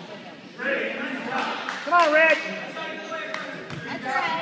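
Voices echoing in a large gym, with one loud, high-pitched shout about two seconds in and a few basketball bounces on the hardwood floor.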